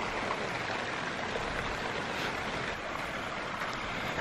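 Heavy rain falling, a steady even hiss of rain on wet ground and puddles.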